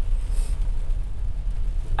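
Steady low rumble of a car, heard from inside its cabin, with a brief soft hiss about half a second in.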